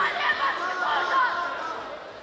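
Overlapping raised voices calling out with no clear words, echoing in a large indoor hall.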